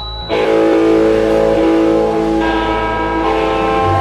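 Guitar played through an amplifier: a chord struck about a third of a second in and left ringing, its notes shifting twice as the playing continues.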